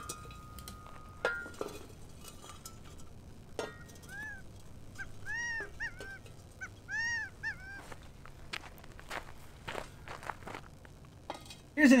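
Metal shovel blade knocking and scraping faintly among ash, stones and fired pottery as the pots are lifted out of the fire bed. About four seconds in comes a run of short, high, arching animal calls, several in quick succession.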